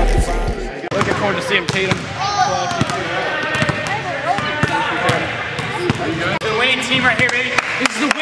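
A music track with a heavy beat stops about a second in. After that, children chatter and a basketball bounces on a gym floor.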